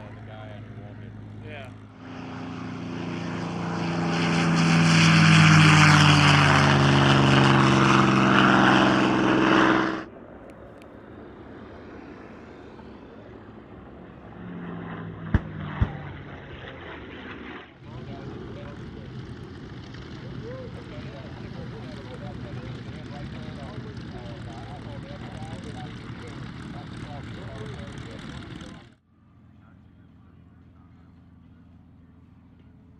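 P-51 Mustang Merlin V-12 engines in a run of separate shots. First, one Mustang swells up to a loud pass with sliding engine pitch for about eight seconds and then cuts off. Then comes a quieter stretch of a Mustang in flight with two sharp clicks in the middle, and finally a Mustang's engine running steadily as it taxis.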